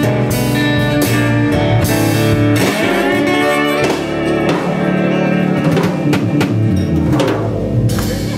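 Blues band playing live without vocals: guitar over keyboard and a drum kit, with cymbal and drum hits.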